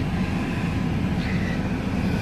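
Steady low rumble inside a car's cabin with the car running.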